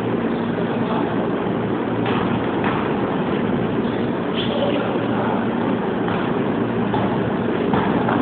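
Steady echoing din of a basketball game in a gymnasium, with a few short knocks.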